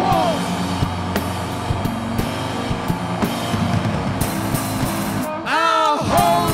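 Live rock band playing an instrumental passage: electric bass holding low notes under electric guitar, with drum hits throughout. A voice comes in near the end.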